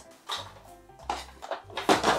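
Background music with a steady low bass line, and a light knock near the end as a plastic toy cooker is set down on a table.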